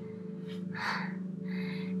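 A woman drawing two deep, gasping breaths, the first about half a second in and the second near the end. Under them runs a low, steady drone from the film's score.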